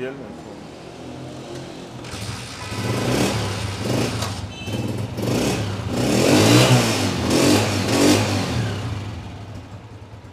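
United US125 motorcycle's single-cylinder four-stroke engine idling, then revved in a series of throttle blips through the middle before easing back toward idle. It runs cleanly, which the seller takes as the sign of an engine in good shape.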